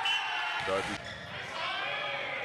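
Sounds of play on an indoor volleyball court in a large hall: thin high-pitched squeaks and calls over a steady hall background, with a faint knock about a second in, under a commentator's short remark.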